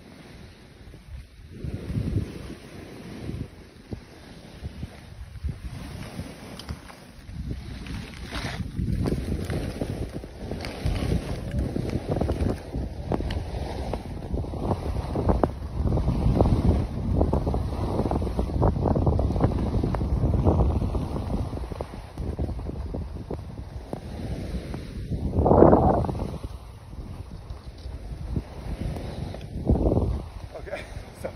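Wind buffeting a handheld camera's microphone as the filmer skis downhill. The rumble builds from about eight seconds in, eases later on, and has one louder gust a few seconds before the end.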